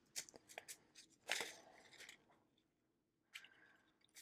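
Faint handling noise of small plastic bags of diamond-painting drills being pulled from a packed storage box: a few light clicks, then a short plastic crinkle about a second and a half in.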